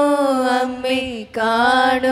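A man singing a slow devotional chant in long held notes, each sliding down in pitch at its end, with a brief break a little past the middle.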